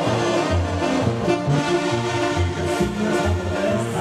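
A banda sinaloense playing live: a brass section of trumpets and trombones holding chords over a low bass line whose notes change about every half second.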